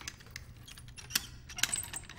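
Keys and metal lock parts of a barred cell door clicking and clinking: a string of sharp metallic clicks with a short ringing after some, coming thicker towards the end.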